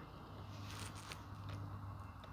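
Faint, sparse clicks and light handling noise over a low, steady hum, inside a truck cab.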